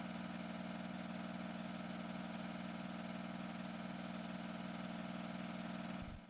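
Film projector running, a steady mechanical sound with a fast, even clatter, used as the sound effect of an old-film end card.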